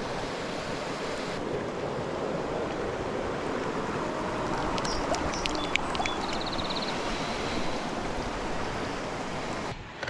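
Shallow creek water running steadily over rocks. A few light clicks and a brief high buzz come about halfway through.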